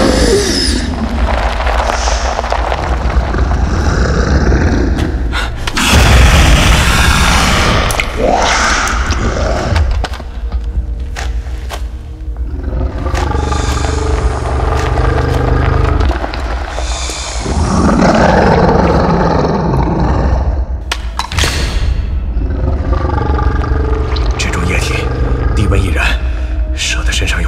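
Action-film soundtrack: music over a continuous deep rumble, with loud sweeping surges of noise about six, thirteen and eighteen seconds in, and a few sharp hits near the end.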